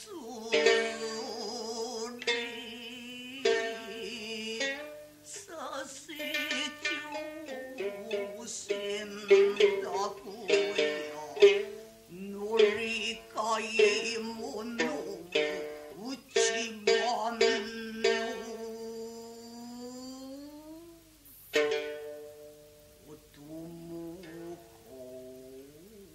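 A woman chanting gidayū-bushi in long held, wavering tones that slide in pitch, accompanied by a futozao shamisen whose sharp plucked notes punctuate the voice.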